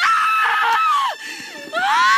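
A woman's anguished screaming wail of grief: one long cry that falls away about a second in, then a second cry rising near the end.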